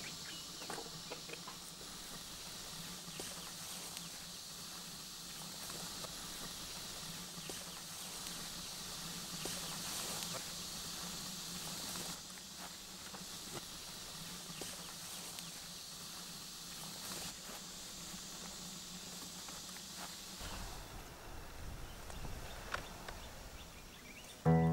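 Quiet outdoor ambience in open countryside: a steady high hiss with faint scattered clicks and rustles, and a low hum that stops about twenty seconds in.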